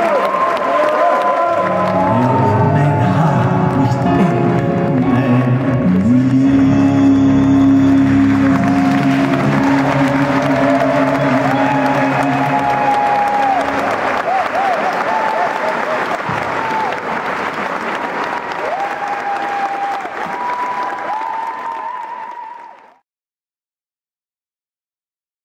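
Audience applause over music with a wavering sung voice and a sustained low accompaniment. The sound stops abruptly shortly before the end.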